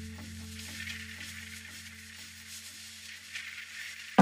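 Quiet crackling, sizzling hiss over a steady low hum, with faint short tones about twice a second.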